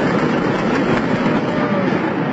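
Steady, loud rumble of a multi-storey building collapsing in a controlled demolition implosion.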